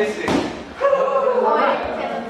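A single thud about a quarter second in, from men grappling on padded floor mats, with voices talking over it.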